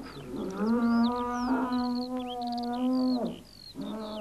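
A bull bellowing: one long, steady-pitched call lasting about three seconds.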